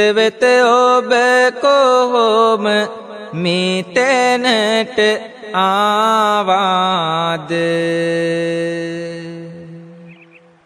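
A Buddhist monk's voice chanting a Sinhala verse (kavi) in a drawn-out, melodic sung style, phrase by phrase, ending in a long held note that fades away.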